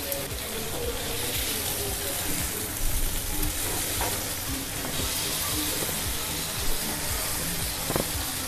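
Stuffed okra sizzling steadily as it fries in a little oil on a tawa, with a metal spatula scraping and tapping against the pan a few times.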